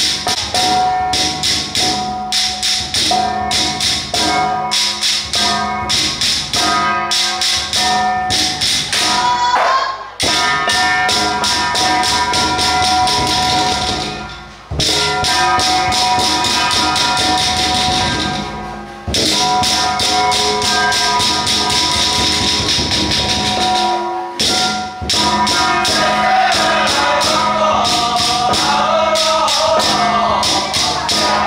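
Penghu Xiaofa ritual percussion: drum and handheld percussion struck in a quick, steady rhythm with ringing tones under it, breaking off briefly a few times. Group chanting joins near the end.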